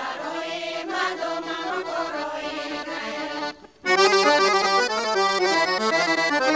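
A Bulgarian folk group, mostly women's voices, singing together. About three and a half seconds in the singing breaks off, and a moment later an accordion starts playing louder.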